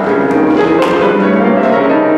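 Live solo piano playing loud, dense chords, many notes left ringing together, with several sharp new strikes.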